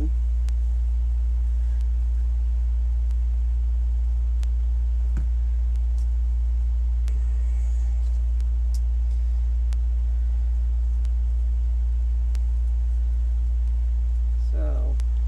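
A steady low hum, unchanging throughout, with a few faint clicks and a soft knock about five seconds in from hands handling the wreath and clothespins.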